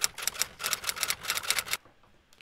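Typing sound effect: a quick run of key clicks, about ten a second, stopping shortly before the end.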